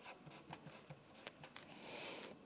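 Faint scratching and small tapping strokes of a pen writing on paper, a few short strokes with a slightly longer scratch near the end.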